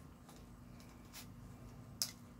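Faint handling noise of a plastic clothes hanger as a skirt is hung on it: a few light clicks and rustles over a low steady hum.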